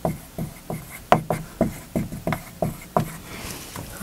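Dry-erase marker writing on a whiteboard: a run of short strokes, about three a second.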